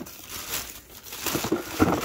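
Plastic poly mailer envelope crinkling and rustling in irregular bursts as hands pull it open and reach inside, louder near the end.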